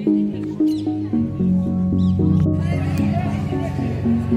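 Music: a melody of short stepped notes over a steady low accompaniment, with a few brief high gliding sounds over it about one and two seconds in.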